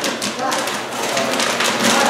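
Popcorn popping in a large commercial kettle popcorn machine: a dense, irregular run of rapid pops and taps, with voices murmuring behind.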